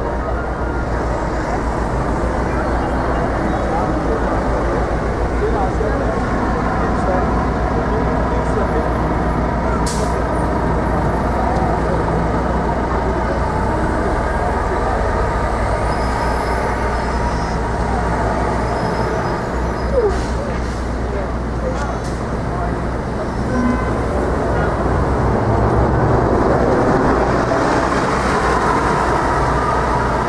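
Busy city street traffic: cars and city buses passing through an intersection with a steady engine and tyre rumble, mixed with the voices of people on the sidewalk. A short sharp knock stands out about two-thirds of the way in.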